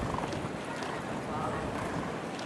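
A thoroughbred racehorse walking, its hooves clopping, over a background of people's chatter.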